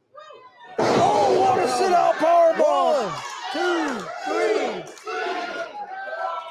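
A wrestler slammed onto the ring canvas with a sudden loud bang about a second in, followed by several voices shouting and oohing in reaction for the next few seconds.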